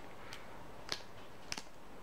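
Three short, sharp scrapes of a survival bracelet's ferro rod being struck with its metal scraper to throw sparks, about two-thirds of a second apart, the loudest about a second in.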